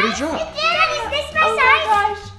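Excited, high-pitched voices of young children and a woman talking over each other, with no clear words.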